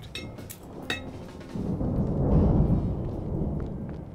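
A deep rumble that swells up about a second and a half in, peaks, and fades away near the end, after a few short clicks in the first second.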